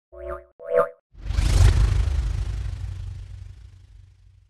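Logo intro sting: two short pitched blips in quick succession, then about a second in a whoosh-like swell with a deep low rumble that fades away over the next few seconds.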